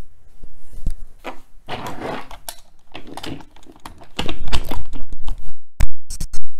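Hard plastic toy pieces clicking and knocking as Code-a-pillar segments are handled on a tabletop, with louder low thumps from about four seconds in.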